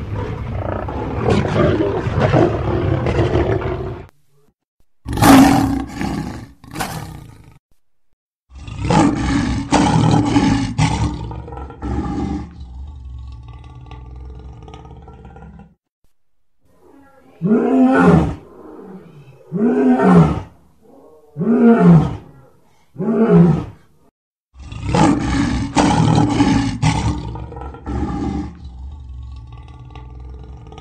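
Lions roaring, in several separate recordings joined with abrupt cuts: long rumbling roars, and in the middle a run of four short grunting roars a little under two seconds apart.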